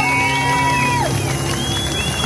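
Amplified street performance: a long held, bending vocal note that ends about halfway through, over a steady low backing chord from a PA speaker, with crowd cheering and whoops.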